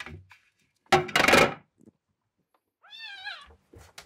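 A young kitten meows once, about three seconds in: a short call that rises and then falls in pitch. About a second in, before the meow, there is a louder brief clatter, the loudest sound here.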